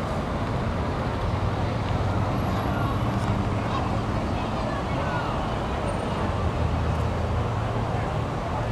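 Open-air ambience of a busy square: a steady low engine hum and traffic noise, with indistinct voices of people around.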